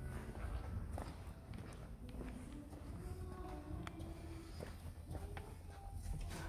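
Faint footsteps with scattered light clicks and knocks from handling, over a low steady rumble.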